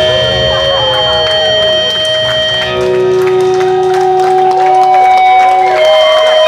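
Live rock band playing: electric guitar holding long sustained notes and bent, wavering pitches over bass and drums. The low bass and drums thin out about three seconds in, leaving the guitar ringing.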